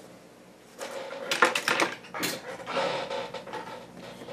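Handling noise from a large yarn ball being tugged and wrestled with, the yarn pulling off the outside of the ball instead of from its centre. A quick run of rustles and clicks comes about a second in, then a sharper knock, then softer rustling.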